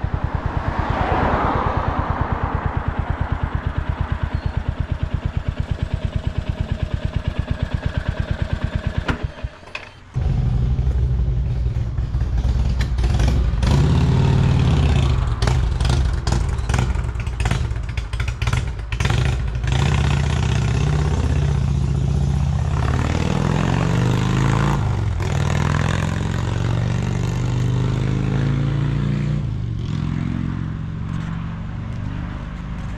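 Motorcycle engines running at low speed, a steady pulsing beat at first. Around nine seconds in the sound drops out briefly, then comes back as a deeper, louder rumble with scattered clicks and clatter as the bikes roll slowly into a driveway.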